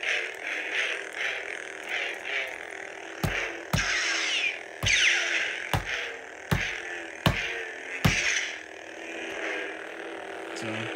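A pair of Hasbro Black Series Force FX Darth Maul lightsabers playing their electronic blade hum through their built-in speakers, with rising and falling swing sounds as the blades are waved. About seven sharp knocks come between about three and eight seconds in.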